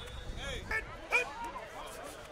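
Short, sharp shouts and yells from players and onlookers on a football field, a few quick calls about half a second and a second in, over faint background chatter.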